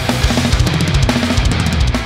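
A heavy metal mix playing, mastered through EZmix 3's AI-assisted Progressive Metal Master chain: programmed drums from EZdrummer 3's Metal Mania kit, with bass drum and snare hits, over sustained bass and guitars. A run of rapid drum hits comes in the second half.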